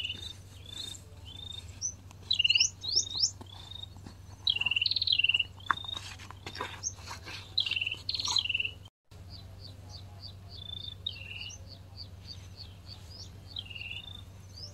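Small birds chirping: repeated short swooping calls, several of them loud, then a quicker run of thin high notes after a brief break in the sound.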